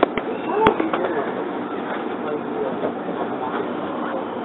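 Cabin running noise of a 681-series electric limited express train, with several sharp clacks from the wheels on the track in the first second as it comes into a station.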